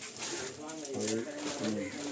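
Pigeon cooing, a steady run of low, repeated notes.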